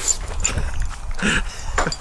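Rustling and handling noise with a few light clicks as a small dog moves and sniffs against a person's lap, over a steady low rumble.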